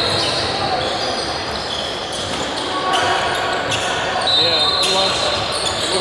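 Basketball game in an echoing gym: a ball bouncing on the hardwood court and players' and spectators' voices, with a high squeak about four seconds in.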